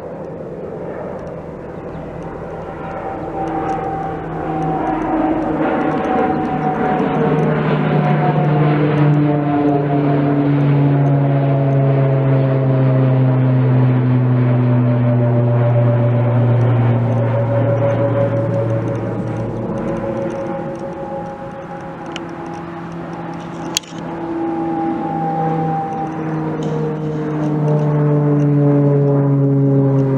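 Four-engine turboprop AC-130J Ghostrider gunship droning overhead as it circles, its propeller hum a set of low steady tones that slide slowly down in pitch with a sweeping, phasing quality. The sound swells, fades somewhat, then swells again. A single sharp click comes about three-quarters of the way through.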